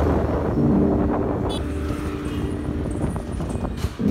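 Wind buffeting the microphone over a low, rough rumble, with a sharp click about one and a half seconds in and another near the end.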